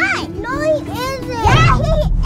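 High-pitched children's voices squealing and chattering in quick rising and falling cries, with a low thud about one and a half seconds in.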